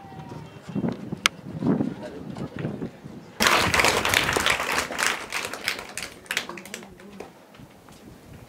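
Faint voices, then about three and a half seconds in a sudden loud burst of crowd noise from the assembled schoolchildren, with many quick sharp sounds in it, fading away after about three seconds.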